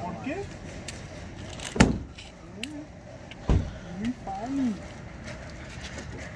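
Two loud knocks about a second and a half apart, from metal conduit being loaded at the back of a pickup truck, with short bits of voice between them.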